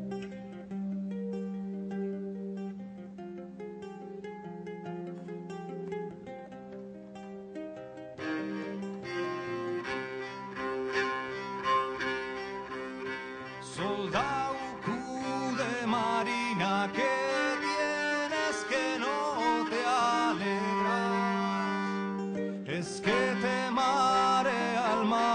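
Live acoustic folk music in a slow, sad tune: plucked string notes over a steady low drone, with the band coming in much fuller about eight seconds in, played on guitar and a keyed string instrument. A voice starts singing a wavering melody a little past halfway.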